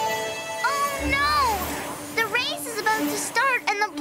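Cartoon background music with a held note, over which a character makes wordless, high-pitched chirping vocal sounds that rise and fall quickly; a swish with a low thump about a second in.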